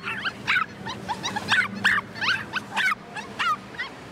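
Small dogs yipping and whining: quick, irregular, high-pitched yelps, several a second, that stop shortly before the end.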